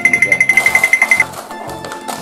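A loud, high-pitched, rapid beeping, about ten pulses a second, lasting a little over a second, over background music with a steady beat.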